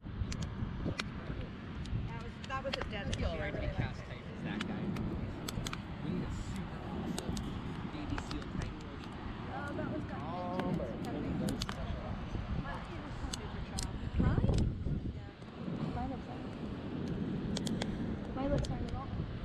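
Indistinct chatter of several people over a steady low rumble, with frequent sharp pops and clicks from a small driftwood campfire crackling.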